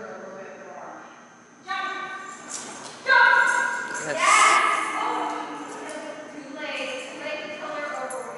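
A person's raised voice calling out in a large, echoing hall: several drawn-out calls starting about two seconds in, the loudest around three and four seconds in.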